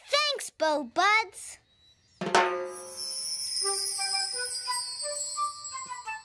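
A child's short voiced exclamations, then about two seconds in a sudden swishing hit gives way to a cartoon magic sound effect: a twinkling, jingling shimmer over held musical notes.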